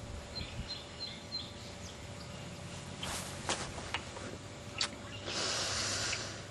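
Quiet backyard ambience with a few faint, short, high bird chirps in the first second and a half, some soft clicks or rustles, and a brief rush of hiss near the end.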